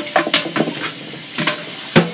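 Kitchen faucet water running and splashing into the plastic bowl of an AeroGarden as it is rinsed in a stainless steel sink, with irregular short knocks and scrubbing as the bowl is handled and brushed.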